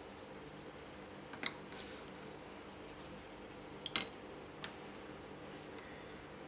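Faint room tone with a few light clicks, the loudest about four seconds in with a brief ringing clink, as a paintbrush is set into a small water pot and fondant hearts are handled.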